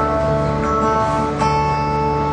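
Acoustic guitar strummed in a song's closing instrumental bars, its chords ringing on, with a new chord struck about one and a half seconds in.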